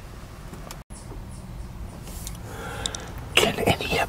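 Close-miked chewing of grilled chicken, with soft mouth clicks. The sound cuts out for an instant about a second in. Louder mouth and breath noises come in near the end.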